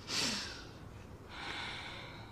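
A young woman's audible breaths: a breath out right at the start, then a second, fainter breath about a second and a half in.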